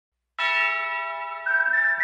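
A bell-like chime in the song's intro strikes about half a second in and rings on, slowly fading. A second, higher bell note enters about one and a half seconds in.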